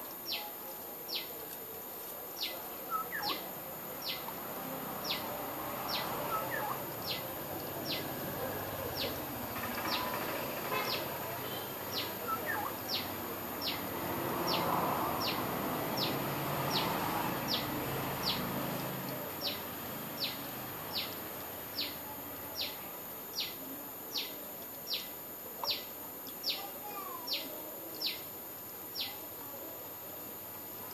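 A bird repeating one short, high chirp that falls in pitch, evenly a little more than once a second, over steady background noise that grows louder about halfway through.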